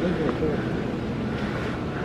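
Steady background noise of a large, echoing hangar, with faint voices talking in the first half-second.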